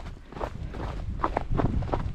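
Hikers' footsteps on a snow-covered downhill trail whose snow is partly melted and slippery: an irregular run of steps and scuffs that starts after a brief lull.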